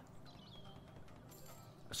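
Faint game music and reel sound effects from the Ronin Stackways online slot as a free spin's symbols drop into place.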